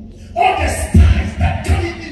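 Music with a man singing into a microphone over it, coming in loudly about half a second in after a quieter moment.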